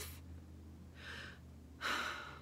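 A woman breathing between sentences: a faint breath about a second in, then a louder, sharper intake of breath near the end, just before she speaks again.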